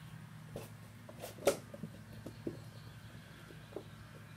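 Puppies, almost eight weeks old, giving a few short yelps and squeaks as food arrives, the loudest about a second and a half in, over a low steady hum.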